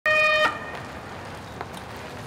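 A vehicle horn gives one short, loud honk lasting under half a second, followed by street background noise with a single brief knock about a second and a half in.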